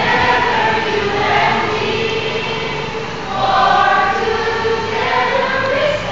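A group of voices singing a song together, holding long notes.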